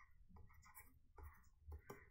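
Faint scratching and tapping of a stylus writing on a tablet, in short irregular strokes over a low room hum.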